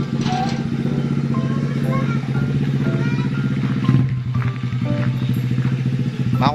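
Small single-cylinder mini trail motorbike (pit bike) engine running steadily at idle, with a fast, even pulsing beat.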